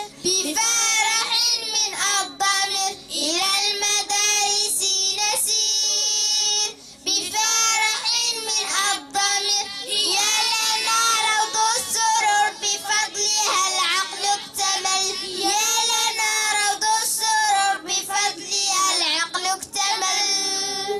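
A group of children singing together in unison into microphones, in long sung phrases with a short break about seven seconds in.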